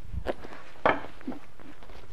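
Handling noise of a nylon strap being fitted over crampons on a backpack: a few soft knocks and rustles, the loudest a little under a second in.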